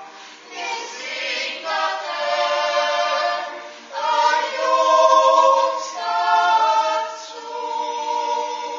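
Mixed Swiss yodel choir singing a Jutz, a wordless natural yodel, a cappella: men's and women's voices hold full chords that change about every two seconds, swelling to their loudest in the middle.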